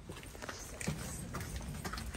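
Footsteps of people walking single file on a gritty stone floor, a few uneven steps about two a second.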